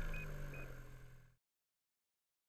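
Faint, steady low hum of a two-stroke Ski-Doo snowmobile engine idling, fading out to silence a little over a second in. Two short high beeps sound near the start.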